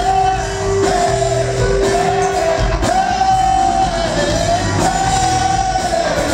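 Live funk band playing through a PA: a lead singer's long held notes that bend in pitch over bass, drums, electric guitar and keyboards, with a steady held note underneath that stops a little before halfway.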